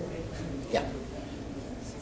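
Room tone with one brief vocal sound from a person about three quarters of a second in.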